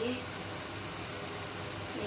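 Chopped vegetables frying in oil in a pan, giving a steady sizzling hiss, with a low steady hum underneath.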